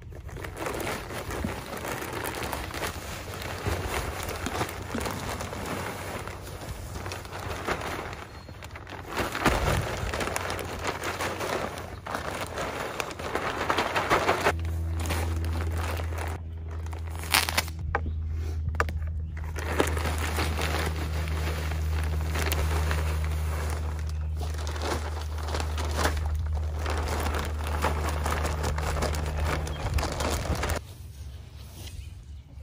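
Garden soil poured from a plastic bag onto a layer of straw, with the bag crinkling and rustling and the soil sliding out. About halfway through, a steady low hum starts and carries on under the rustling.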